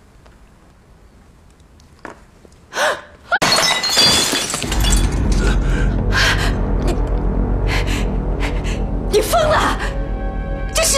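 A porcelain vase smashing on a hard floor about three and a half seconds in: one loud crash of breaking china, just after a short gasp. Dramatic music then comes in and plays loudly to the end.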